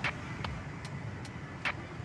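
Road traffic: a steady rumble of passing cars, with a few short sharp clicks about half a second and a second and a half in.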